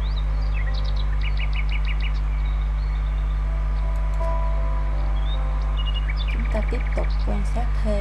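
A steady low electrical hum with small birds chirping over it: a quick run of about five high chirps about a second in, and scattered chirps and wavering calls near the end.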